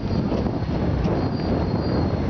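Steady wind noise on the microphone of a camera riding on a moving bicycle, mixed with the rumble of tyres on the road.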